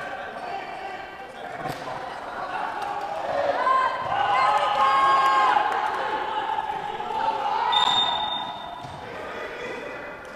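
A basketball bouncing on a hardwood gym floor during a wheelchair basketball game, with players' voices calling out across the court. The calls are loudest in the middle of the stretch and again a couple of seconds later.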